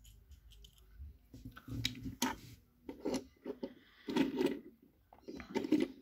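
Small die-cast toy figures being handled and set down on a wooden surface: a scattering of light clicks and knocks, the loudest about four and six seconds in.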